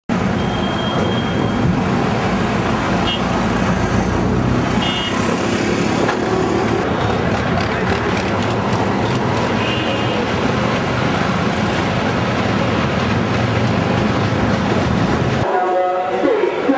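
Train running through a railway yard: a loud steady rumble, with a few short high-pitched toots.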